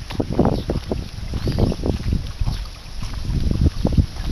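Wind buffeting the camera's microphone in irregular low rumbling gusts, with a sharp knock just before the end.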